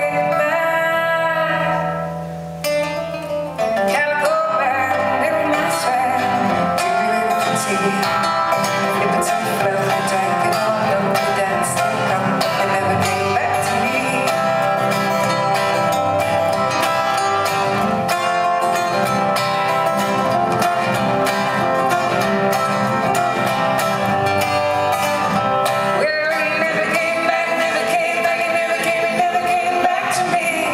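Two acoustic guitars strumming and picking a brisk folk-style accompaniment, played live. They thin out briefly about two seconds in, then come back in full.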